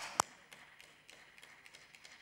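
A few people clapping briefly: a couple of sharp, separate handclaps near the start, then faint scattered claps that die away.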